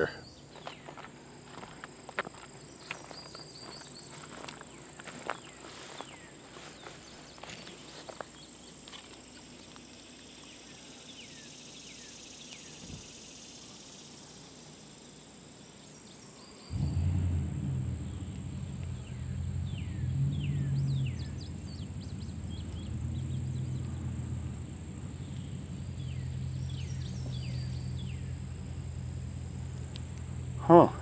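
Insects chirring steadily in a high band, with footsteps through grass and small clicks in the first half. About seventeen seconds in, a louder low steady hum starts suddenly and carries on underneath.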